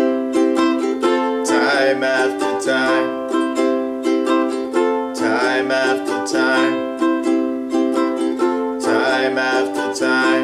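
Ukulele strummed in a steady rhythm through an F–G–C chord progression in C major. A man's voice sings a short phrase about every three and a half seconds.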